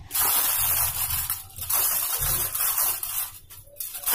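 Aluminium foil crinkling and rustling as it is pressed down and wrapped around the rim of a cooking pot to seal it, with a brief break about a second and a half in and a short pause near the end.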